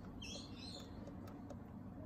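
Faint background with a small bird chirping briefly in the first second, then a few faint clicks of buttons being pressed on the inspection camera's control unit.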